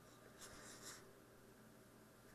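Faint rubbing and handling noise of hands on a Sig Sauer P320 pistol's polymer grip and slide, two soft scuffs in the first second.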